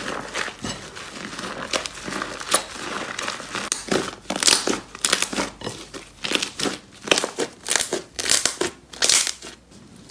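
Hands kneading and squeezing slime: a wet, crackly crinkling, which about halfway through turns into separate sharp pops, roughly two a second, with each squeeze.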